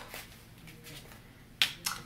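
A tarot card snapping as it is pulled off the deck and laid down: one sharp snap about one and a half seconds in, then a softer tap just after.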